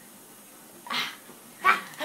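Two short breathy vocal bursts, one about a second in and a louder one near the end, as laughter begins.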